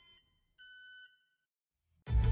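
Two faint electronic chime tones from an intro logo sting: a short one at the start and a longer one of about half a second, starting about half a second in.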